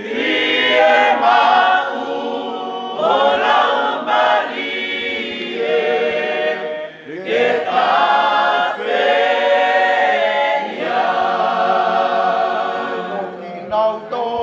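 Congregation singing a hymn unaccompanied, many voices in harmony, in sung lines with brief pauses between them, the clearest about seven seconds in.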